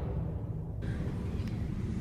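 The fading tail of two deep impact sound effects from a video intro, then a low steady background rumble with a faint click about one and a half seconds in.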